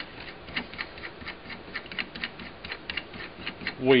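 Tailstock handwheel of a Clarke 37-inch wood lathe being turned by hand, the quill mechanism giving light, uneven clicks, about four or five a second.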